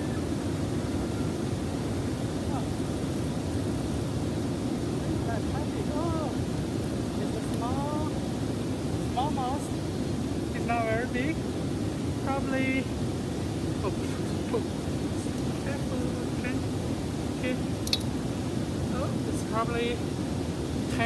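Steady rushing of a fast, shallow river running over rapids, a constant low rush of water. A few short rising-and-falling pitched calls sound over it in the middle and again near the end.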